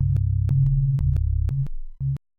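Electronic beat at 123 bpm: very low synthesized bass notes, distorted, held without a break under sharp clicks about every quarter second. The bass line shifts about a second in.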